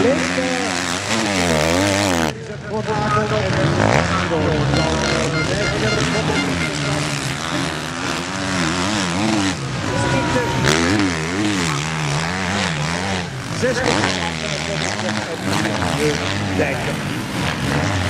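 MX1 motocross bike engines revving hard, their pitch rising and falling over and over as the throttle is opened and closed through corners and bumps.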